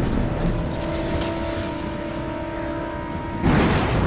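Dramatic sound effects of destruction: a continuous loud, low rumble, with a sustained drone of a few held musical tones through the middle, and a sudden loud crash a little before the end.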